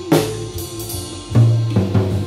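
Acoustic drum kit being played: a cymbal crash with a drum hit at the start, then heavy low drum strokes about halfway through and again near the end.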